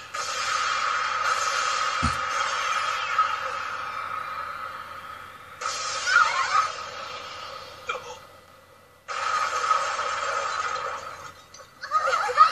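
Anime sound effects for a magical energy blast, thin as heard through a TV speaker: a long hissing whoosh that fades away, with a low thud about two seconds in, a short wavering voice-like sound around six seconds, and a second whoosh starting about nine seconds in.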